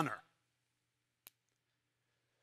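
Near silence with a faint low hum, broken once by a single sharp click a little over a second in.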